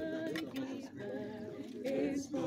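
A group of people singing together unaccompanied, holding sustained notes.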